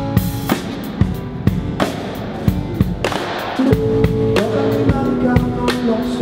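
A live pop band playing: a drum kit keeps a steady beat of about two hits a second under guitar and keyboard chords, and a held melody line comes in about halfway through.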